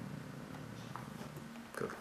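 A man's low, drawn-out hesitation hum, held on one steady pitch for about a second and a half before he breaks off.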